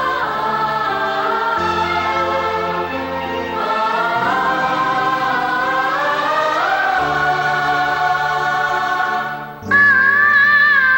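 Music with a choir singing long, drawn-out lines over held low chords. Just before the end it breaks off briefly and a different, louder song starts.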